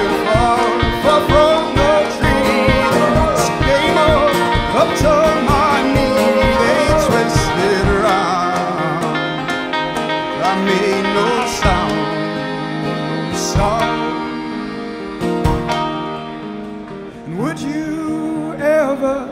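Live folk band playing acoustic guitar, banjo and accordion with wordless singing over a steady beat; the beat drops out about two-thirds of the way in and the music grows quieter near the end.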